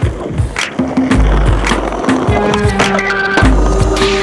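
Skateboard wheels rolling on pavement, with sharp clacks of the board, under loud music with a steady beat.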